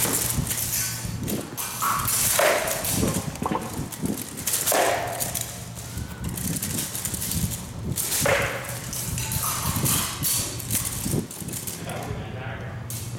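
Practice weapons striking a painted shield and steel helmets and armour in a sparring bout: a running string of sharp knocks and clatters, with heavier blows about two and a half, five and eight seconds in.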